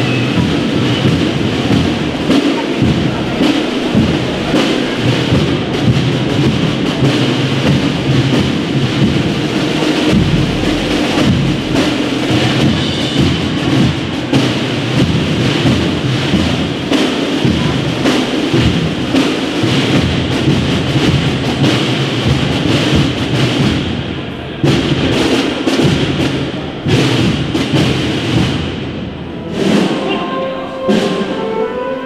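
Spanish wind band (banda de música) playing a processional march, brass and woodwinds over steady drum beats. Loud throughout.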